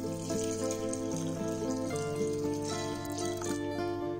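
Water pouring in a thin stream into a glass bowl of raw rice, filling it to soak the rice, over background music.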